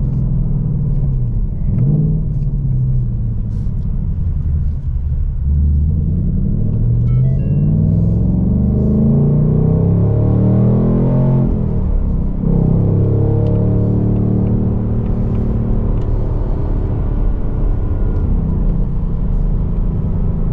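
Ford Mustang Dark Horse's naturally aspirated 5.0-liter Coyote V8, heard from inside the cabin while driving. The engine note climbs steadily under acceleration for several seconds, drops sharply with an upshift of the six-speed manual about twelve seconds in, then holds steady.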